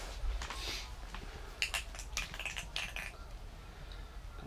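Handling noise from a small ice-fishing rod and spinning reel: a soft rustle, then a run of short, sharp clicks and clatters about one and a half seconds in.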